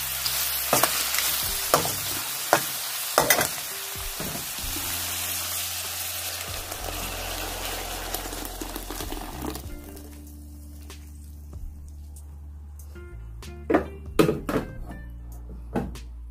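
Onions and chiles sizzling in hot oil in a frying pan, stirred with a metal spoon that clicks against the pan. About ten seconds in the sizzling drops away suddenly as ground red tomato salsa covers the pan, leaving quiet stirring with a few spoon knocks near the end.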